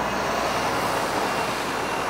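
Steady road traffic noise, a continuous even rush of passing vehicles.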